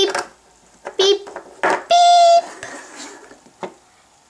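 Plastic toys clattering against a pink toy cash register as they are scanned, with a steady, even-pitched electronic beep about half a second long near the middle, the loudest sound here. A spoken "Beep!" comes right at the start.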